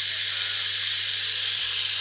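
Steady hiss of a weak FM signal from a two-metre amateur radio transceiver's speaker, with a low hum underneath, in a pause in the other station's speech.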